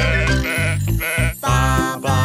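A cartoon sheep bleating twice in quick succession, a quavering 'baa', over the bouncy backing music of a children's song.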